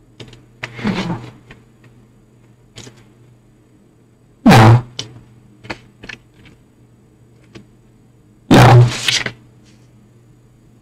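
Corrupted stream audio: a steady low electrical buzz broken by clicks and distorted bursts, two of them very loud and clipped, about halfway through and near the end.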